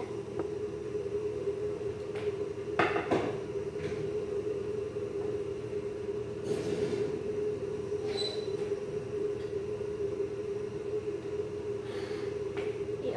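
Steady electrical hum of a kitchen appliance, with a few knocks and clatters of kitchen handling. The loudest knock comes about three seconds in, a rattle follows a few seconds later, and a short high ping comes near eight seconds.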